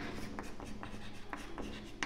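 Chalk writing on a chalkboard: a string of short taps and scratches as letters are written.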